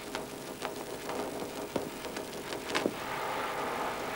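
Faint background with a steady low hum and a few soft clicks or taps, with a steady hiss growing louder near the end.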